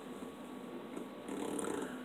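Faint chewing and breathing through the nose of a person eating, a little louder in the second half.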